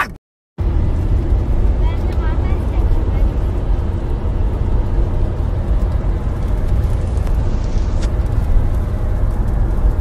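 Steady low rumble of a car heard from inside the cabin. It is preceded by the tail of a man's shout that cuts off at the very start, then a brief dead silence.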